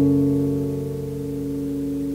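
Acoustic guitar's last strummed chord ringing out and slowly fading, its higher notes dying away about a second in while the low strings sustain.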